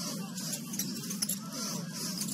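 Basketball arena game sound: a steady crowd murmur with short, high squeaks of sneakers on the hardwood court.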